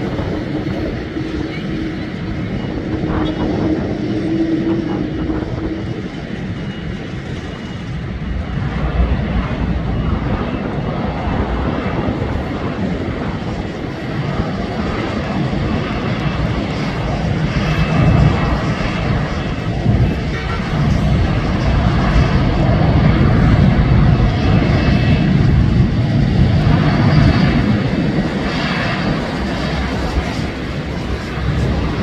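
Boeing 787 with Rolls-Royce Trent 1000 turbofans running at taxi power as the jet taxis close by: a continuous jet roar that grows louder about halfway through, with a deeper rumble in the second half.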